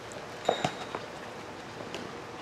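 A futsal ball struck once by a foot about half a second in: a short sharp thud over the steady hiss of an outdoor court.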